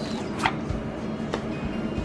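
Pokémon trading cards being handled and squared into a stack: a couple of light, sharp clicks and taps over a faint steady hum.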